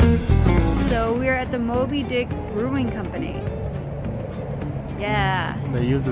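Jazz-style background music with drums that stops about half a second in, followed by a woman's and a man's voices talking and laughing.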